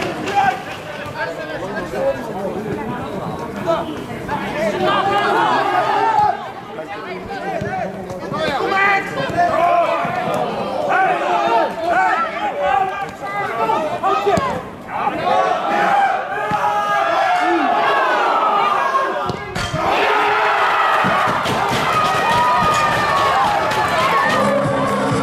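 Players and spectators shouting and calling over one another on a football pitch, the voices growing dense and steady over the last few seconds.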